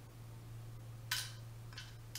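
A short, light click of a makeup product being handled on a tabletop about a second in, with a fainter click shortly after, over a steady low hum.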